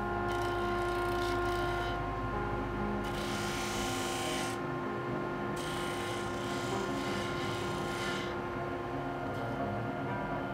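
Electric disc sander running with a steady motor hum, while small pieces of wood are pressed against the abrasive disc; the gritty sanding hiss swells for a second or two at a time, most strongly a few seconds in.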